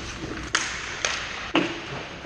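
Sharp clacks of hockey sticks and puck on the ice, three hits about half a second apart, the last one ringing briefly, over the steady scrape of skates.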